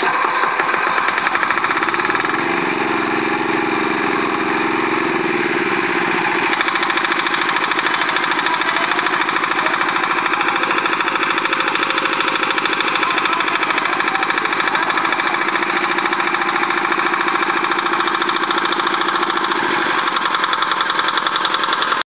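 The small engine of a portable water pumpset, just started and running steadily with a fast, even beat. Its note shifts once about six seconds in.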